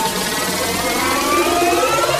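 Build-up in a Vietnamese club remix of electronic dance music: the bass drops out and siren-like synth sweeps glide down, then rise toward the end.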